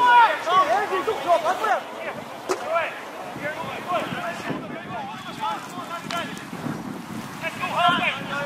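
Distant shouted calls from the football match, several in the first three seconds and more near the end, over wind noise on the microphone.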